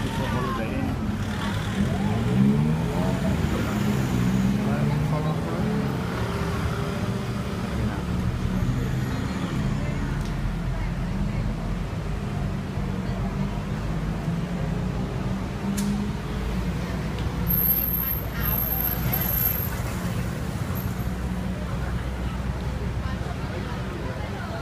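Steady city street traffic, with people's voices talking over it through the first two-thirds or so.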